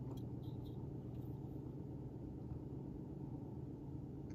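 Steady low background hum, with a few faint soft ticks from the knife being handled.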